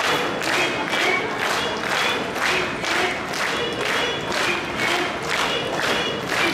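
Audience clapping in unison, about two claps a second, over background show music.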